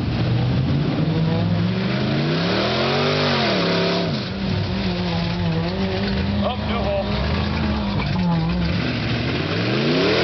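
Dodge pickup truck's engine revving hard as it churns through deep mud and water. The pitch climbs to a peak and drops about three seconds in, holds high for several seconds, falls near the end and then climbs again.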